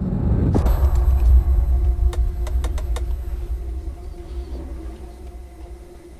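Deep rumble of an airliner in flight, starting with a knock about half a second in and fading away over the next few seconds. A few light clicks or rattles come in the middle.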